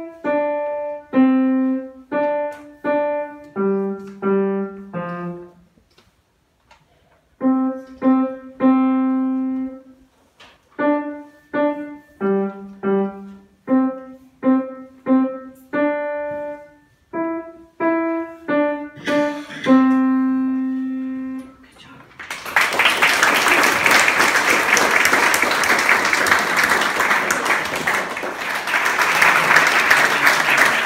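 A young pianist plays a simple melody on a grand piano, note by note over a low accompaniment. The playing pauses briefly about six seconds in and ends on a long held note about two-thirds of the way through, followed by audience applause.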